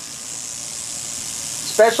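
Rattlesnake buzzing its tail rattle: a steady, fairly faint high-pitched hiss, with a man starting to speak near the end.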